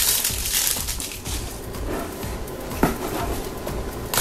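Handling of a cardboard blind box and its plastic wrapper: a crinkling rustle at first, then quieter rustling, with one sharp click a little under three seconds in.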